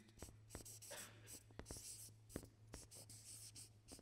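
Marker pen writing on a large easel pad: faint scratchy strokes with small taps of the tip as letters are drawn.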